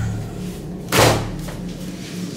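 A white panelled interior door shutting with one loud, sharp bang about a second in.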